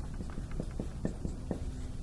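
Marker writing on a whiteboard: a quick run of short taps and scratches, several a second, as symbols are drawn.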